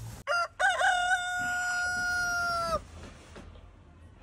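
A rooster crowing once: a few short rising notes, then one long held note of about two seconds that cuts off abruptly.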